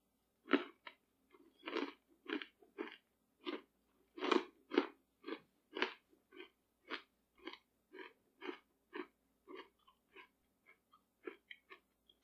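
A person chewing crunchy meat granola, made of dehydrated beef with coconut flakes and macadamia nuts, with closed-mouth crunches about two a second that grow fainter near the end.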